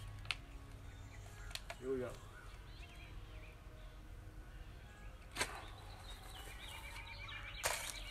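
A single sharp snap about five seconds in as a rubber band is let go and shoots a flying tube made from cut plastic water bottles into the air, followed by another click near the end.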